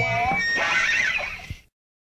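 The ragged end of a lo-fi hardcore punk recording: wavering, squealing high-pitched sounds over the band, which cut off to silence about one and a half seconds in.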